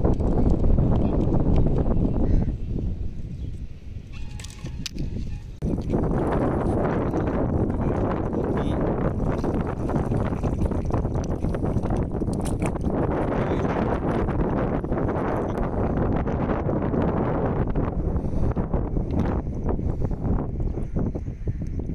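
Wind buffeting the microphone, with water sloshing and splashing as handfuls of clams are swished and rinsed in shallow sea water. The noise eases for a few seconds early on, then runs steady.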